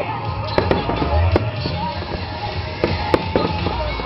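Fireworks going off over a city in several sharp bangs at irregular spacing, with music with a steady bass playing underneath.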